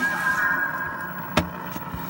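Hissy, humming playback sound from an old videotape on a National NV-3082 portable video recorder. A steady high squeal runs through about the first second, and a single sharp click comes just under a second and a half in.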